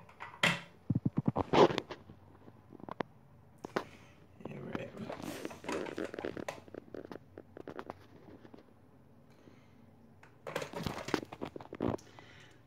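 Handling noise from a phone being moved about, with scattered knocks and clicks, a quick rattle just after the start and soft rustling in the middle, as a person steps onto a digital bathroom scale in a small bathroom; a denser cluster of knocks comes near the end.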